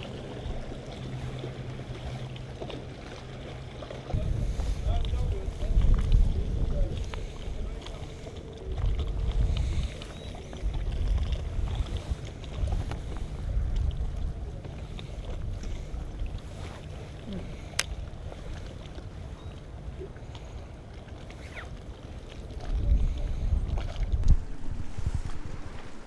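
Wind buffeting the microphone in irregular gusts, over a faint steady hum.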